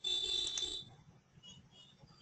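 A short high-pitched electronic tone that starts suddenly and lasts just under a second, followed by a few faint short tones.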